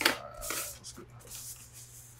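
Sheets of patterned scrapbook paper being slid and shuffled over cardstock on a cutting mat: a few soft rustles and slides, the clearest about half a second in.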